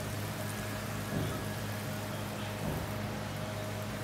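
Hot oil sizzling in a wok as fritter batter is dropped in by hand, over a steady low hum.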